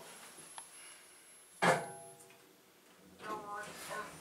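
Kone EcoDisc lift's arrival chime: a single ding that starts suddenly about a second and a half in and rings out over about half a second.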